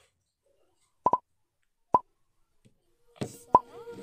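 Short, sharp, pitched pops: two in quick succession about a second in and a third a little before two seconds. Near the end come a clutter of clicks and steady tones.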